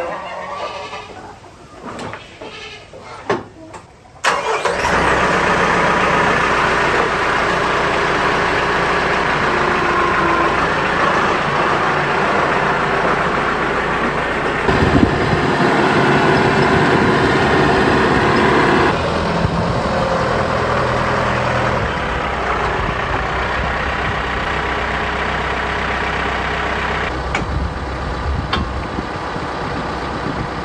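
A TYM 5835 tractor's diesel engine comes in suddenly about four seconds in, after a few faint knocks, and then runs steadily as the tractor is driven. It gets louder for a few seconds about halfway through.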